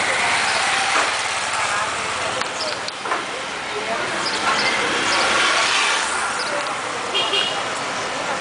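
Street ambience: indistinct voices mixed with the steady noise of road traffic.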